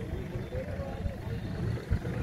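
Background chatter of several people's voices at a crowded fair, over a steady low rumble.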